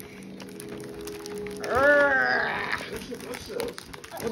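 A wordless straining voice: a held, even hum, then a louder cry that rises and falls in pitch about halfway through, the sound of effort while pushing open a stiff advent calendar window.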